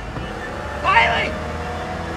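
Car engine running with a low steady rumble as the driver's foot presses the accelerator, and a brief voice-like cry about halfway through.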